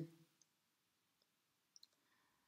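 Near silence: room tone, with the tail of a woman's spoken word fading at the very start and a couple of faint clicks near the end.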